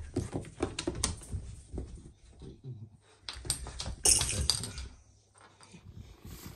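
An American bully puppy playing about on a rug and laminate floor among its toys: a run of light irregular clicks and knocks, with a brief louder rattling burst about four seconds in.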